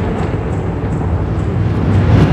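Loud, steady low rumble of a cinematic sound effect under an animated title logo, following on from a boom, swelling again near the end.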